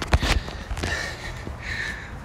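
Footsteps on dry dirt and leaf debris with breathing close to the microphone, and a couple of sharp knocks just after the start.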